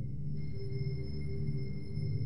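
Soft background music under a pause in the talk: a steady low drone with held notes, joined about half a second in by thin, high, unchanging tones.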